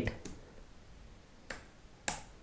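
A single sharp computer mouse click about one and a half seconds in, over quiet room tone.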